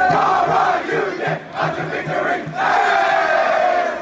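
A football team shouting together in a post-game team cheer: two long, loud group yells with a lull between them, the second held and sinking slightly in pitch.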